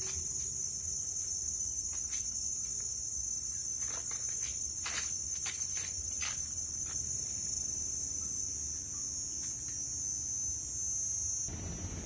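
Steady high-pitched chirring of insects, with a few faint knocks about halfway through. The chirring drops away just before the end.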